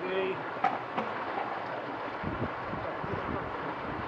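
Steady rush of flowing stream water, with wind buffeting the microphone a couple of seconds in.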